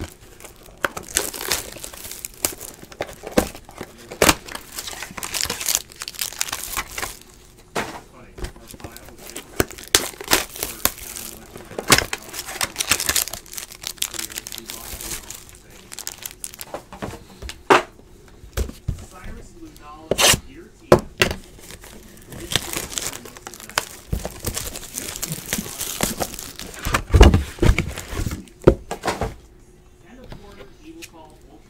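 Trading card boxes being unpacked: cardboard tearing and packs crinkling as they are handled, with irregular rips and knocks, the loudest a heavy thump near the end.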